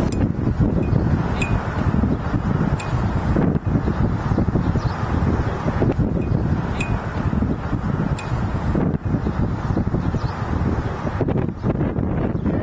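Wind buffeting the microphone: a steady low rumble with a few faint ticks.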